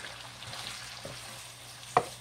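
Sausages and vegetables sizzling steadily in a hot nonstick frying pan. Near the end a wooden spoon knocks once against the pan as stirring begins.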